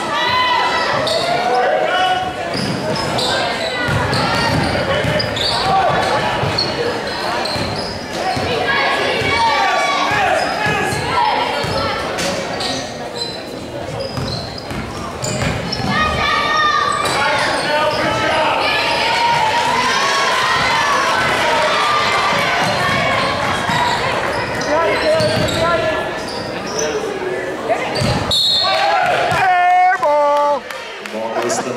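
A basketball bouncing on a hardwood gym floor as it is dribbled, with voices calling out throughout, echoing in a large gym.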